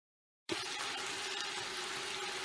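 Silence for about half a second, then cubes of veal searing in hot cooking margarine in a stainless steel pot, sizzling steadily.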